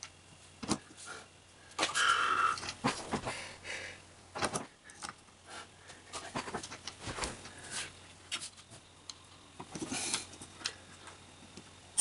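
Scattered small clicks, taps and rustles of hands handling metal washers and screws on an aluminium turntable ring lying on a board.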